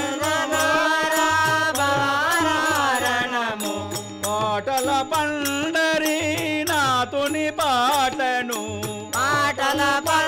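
Men singing a Telugu devotional folk song (Pandarinath tattvam) with a harmonium holding the tune, a steady tabla beat and hand cymbals struck in time.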